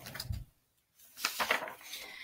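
A picture book being handled and its pages moved: soft rustles and bumps, broken by a short dead-silent gap about half a second in.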